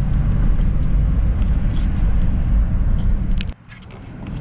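Steady low engine and road rumble inside the cabin of a moving box-body Chevrolet Caprice, with a few light clicks near the end before the sound drops off sharply about three and a half seconds in.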